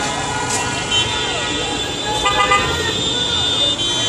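A car horn sounding in a held blast of a few seconds over traffic noise, with voices calling out.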